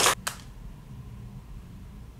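The last two breathy pulses of a laugh right at the start, then a quiet room with a faint low hum.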